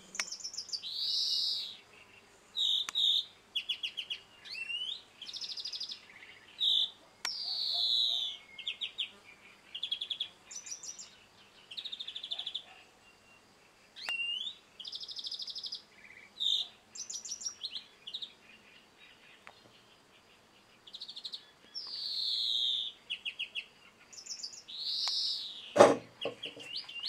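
European greenfinch singing: phrases of rapid twittering trills mixed with long wheezy notes that slide down in pitch, with short pauses between phrases. A sharp knock near the end.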